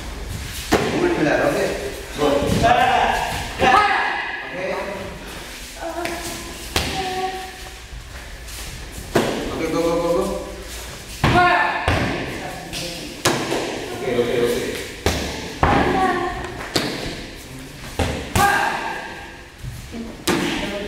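Repeated sharp thuds of kicks and strikes landing on padded taekwondo training targets, about one every second or two, with voices talking between and over them in an echoing hall.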